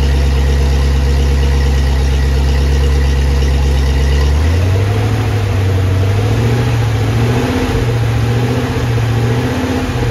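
Carbureted V8 engine idling with its cooling system being filled and bled of air. About four seconds in its note changes from a deep, steady drone to a slightly higher, wavering tone as the engine speed shifts.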